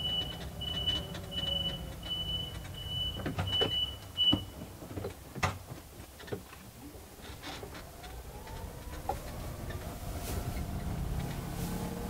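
Electric shuttle's reverse warning beeper sounding a high steady beep about twice a second, stopping about four and a half seconds in as the vehicle leaves reverse. After that a faint electric motor whine rises in pitch as the shuttle pulls away, over low tyre and road rumble.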